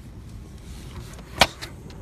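A single sharp clack about a second and a half in, followed by a few light clicks, over a steady low background: the sleeper bunk's platform being unlatched and lifted to reach the storage underneath.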